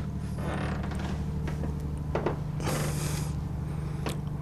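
Steady low hum of onboard machinery aboard a motor yacht, with a faint click about two seconds in and a brief hiss near the three-second mark.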